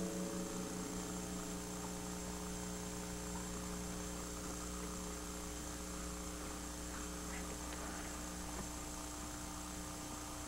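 Steady electrical mains hum, several even tones held without change, with a few faint brief sounds around the middle.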